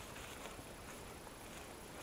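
Quiet outdoor background: a faint, steady hiss with no distinct events.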